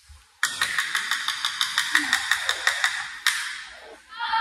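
A recorded track with no bass, played for a performance, with a fast ticking beat of about six or seven ticks a second. It starts abruptly about half a second in and cuts off sharply about three seconds later.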